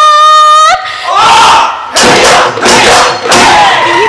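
A woman's held sung note breaks off just under a second in. It gives way to a group of men shouting Bihu cries in about four loud bursts.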